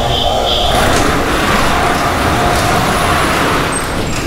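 Barred metal altar gate being slid shut, a loud, even scraping noise that builds about a second in and lasts about three seconds.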